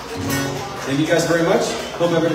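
Acoustic guitar being strummed, its chord ringing, with a man's voice starting about a second in.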